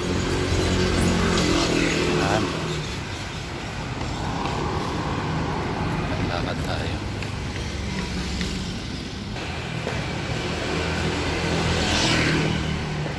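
Road traffic on a city street: a motor vehicle engine runs close by at the start, fades, and another comes up near the end.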